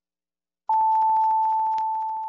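Radio hourly time signal: a single long, steady high beep begins about two-thirds of a second in and holds, slowly fading. It marks ten o'clock on the hour.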